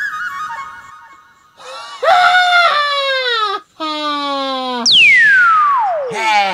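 Comic sound effects: a warbling, whistle-like tone at the start, then a high, wavering drawn-out cry that sinks in pitch, a shorter lower held cry, and a single whistle sliding steeply downward near the end.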